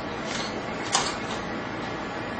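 A metal utensil stirring hay in a steel pan of oily water, with one sharp click against the pan about a second in and a fainter one just before, over steady room noise.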